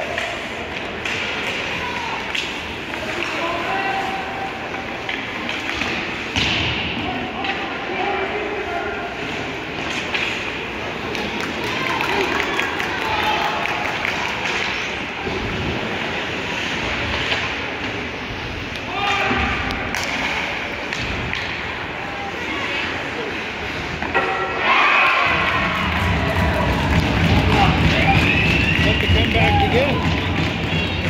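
Ice hockey arena sounds: spectators talking and calling out, with thuds from the puck, sticks and boards. About 25 seconds in, the noise rises into a crowd cheering and shouting as a goal is scored.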